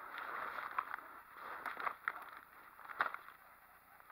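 Footsteps and brush swishing against clothing as someone walks through forest undergrowth, with a few short sharp crackles of twigs and vegetation.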